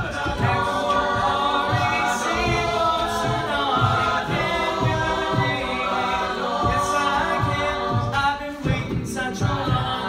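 Mixed-voice a cappella group singing a pop song in close harmony, with a steady low beat about twice a second carried by the voices.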